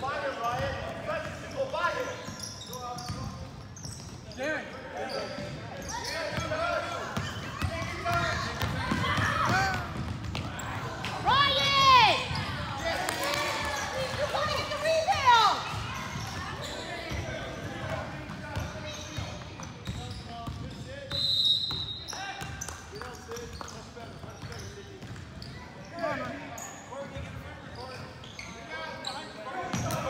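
Youth basketball game on a hardwood gym floor: the ball dribbling, sneakers squeaking sharply on the court, loudest around the middle, and players and spectators calling out, all echoing in the hall.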